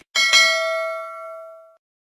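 Notification-bell sound effect: a bright bell chime struck twice in quick succession, its ringing tones fading away over about a second and a half.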